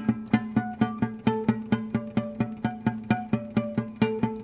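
A single guitar note picked rapidly and repeatedly with a flat pick, about six strokes a second. The upper overtones shift from stroke to stroke as the picking point moves along the string, showing how pick position against the string's nodal points changes the tone.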